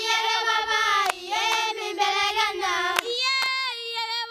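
A group of young Maasai women singing a traditional song unaccompanied, their high voices held on long, gliding notes. A few sharp claps cut through the singing.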